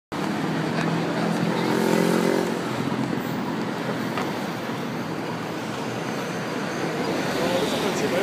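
City street traffic passing close by: a double-decker bus and cars driving past, with one vehicle's engine note rising and falling about one to two and a half seconds in, the loudest moment.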